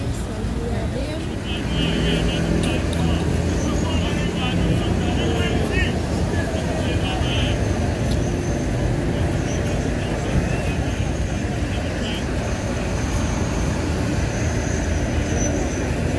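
A motor vehicle's engine running close by, a steady low drone, with people's voices over it.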